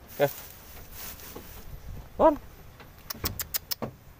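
Dry hay rustling, then a quick run of about seven sharp knocks near the end as a goat moves about in its wooden pen.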